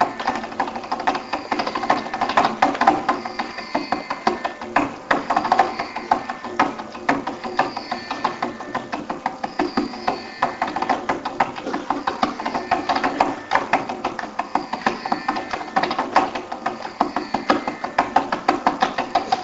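Carnatic classical concert music with a fast, dense run of mridangam strokes over sustained pitched accompaniment.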